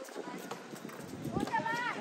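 Irregular knocks of players' footsteps and a basketball bouncing on an outdoor hard court. A voice calls out loudly near the end.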